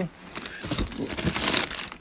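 Plastic bag packaging crinkling and rustling as a hand grabs it and pulls it out of a cardboard box, the rustle growing louder towards the end.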